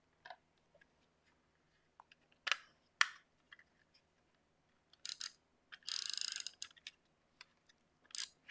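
Faint paper handling with a couple of sharp clicks, then an adhesive tape runner drawn across a die-cut paper strip about six seconds in: a short, rapid rattling rasp lasting about half a second.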